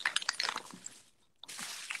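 Faint clicks and rustling of wine corks and stoppers being rummaged through in a small bag. The sound cuts out completely for a moment about a second in.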